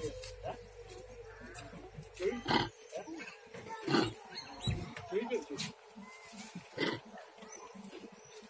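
Macaques calling: short harsh shrieks stand out about two and a half, four and seven seconds in, among fainter scattered calls and background voices.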